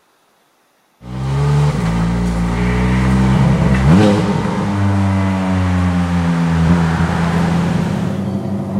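Ferrari 430 Scuderia Spider 16M's 4.3-litre V8 running, coming in abruptly about a second in after near silence. It rises quickly in pitch about four seconds in, then holds a steady note.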